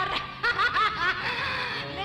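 A woman laughing in short, quick bursts over a music track.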